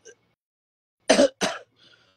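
A man coughing twice in quick succession, about a second in: two short, sharp coughs.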